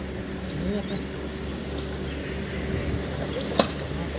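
Wind buffeting the microphone and tyre noise of bicycles rolling along a paved road, a steady rumble, with a sharp click about three and a half seconds in.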